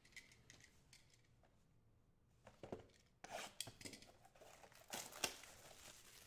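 A sealed box of trading cards being cut and opened: after a near-silent start, a scatter of sharp clicks and crinkling rustles from about halfway through.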